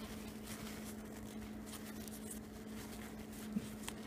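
Faint rustle and rub of a paper towel wiping spilled e-liquid off a vape tank atomizer, over a steady low hum, with a small click about three and a half seconds in.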